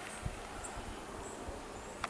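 Quiet outdoor ambience among trees: a faint, even hiss with a couple of faint, short, high chirps about half a second in.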